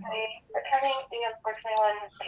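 Speech only: a person talking, in short phrases that the transcript did not catch.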